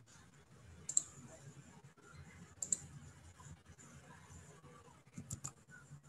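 Faint clicks at a computer over a conference-call microphone: a single click about a second in, another near three seconds, and a quick run of clicks near the end, over faint background hiss.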